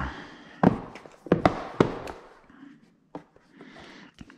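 Cardboard headphone box being opened and handled by hand: a few sharp taps and knocks in the first two seconds, with rustling of the packaging and its paper manual, fading to light handling noise.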